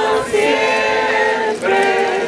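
A group of voices singing together in long held notes, with a short break about three quarters of the way through before the next note.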